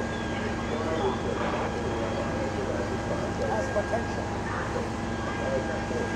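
Fire apparatus engine running with a steady drone and constant whine, under indistinct voices.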